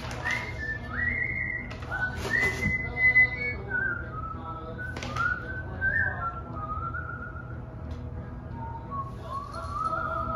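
A whistled tune, slow held notes stepping and sliding up and down in pitch, with a few short rustles of paper.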